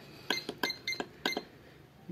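Keypad buttons on a Sonex electronic price computing scale pressed four times in quick succession, each press a short sharp click, as the 20 kg calibration value 20000 is keyed in.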